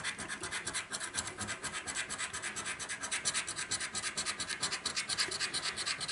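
Scratch-off coating on a paper scratchcard being scraped away in rapid, even back-and-forth strokes.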